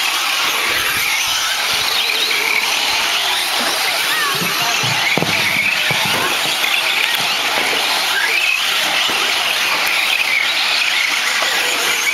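A pack of 4WD short course RC trucks racing, their motors giving a high whine that rises and falls with throttle.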